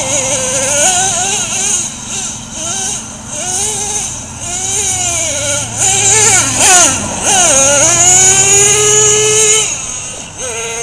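Traxxas T-Maxx RC monster truck's small nitro engine revving up and down as the truck is driven, with a sharp drop in pitch about seven seconds in and then a long, steady climb that falls off near the end.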